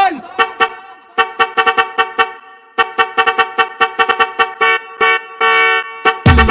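A honking, car-horn-like tone played in quick rhythmic stabs as a break in a budots-style dance remix, with no drums or bass under it. The stabs pause briefly near the middle, come faster further on, and end on a longer held note.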